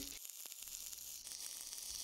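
Faint sizzling crackle of a dual-shield flux-core welding arc running overhead on the correct polarity, electrode positive (DCEP).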